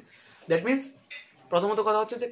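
A man speaking in short phrases, with a brief, quieter clink between them.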